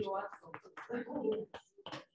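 Quiet, muffled speech from a voice farther from the microphone, followed near the end by two short sharp taps of chalk on a blackboard.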